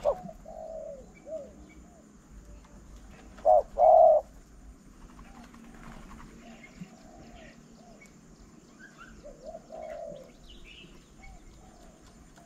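Doves cooing, with two loud, close coos about three and a half seconds in among softer repeated coos, and small birds chirping faintly in the background.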